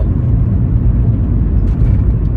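Steady low rumble of a car being driven, tyre, road and engine noise, heard from inside the cabin.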